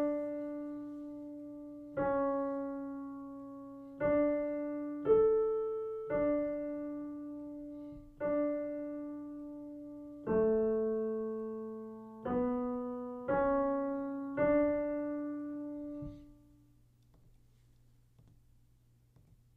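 Piano playing a slow, simple dictation melody in D major, about ten single notes in quarter and half notes, each struck and left to ring and fade before the next. The last note dies away shortly before the end.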